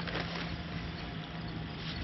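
Hands working a dry mix of perlite and peat moss in a stainless steel bowl: soft, gritty rustling and scraping, over a steady low hum in the background.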